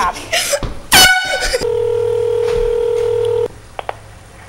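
A handheld blow horn gives one short, very loud blast about a second in, after a little laughter. A steady telephone line tone then sounds for about two seconds and cuts off, followed by two short phone key beeps near the end as the next number is dialled.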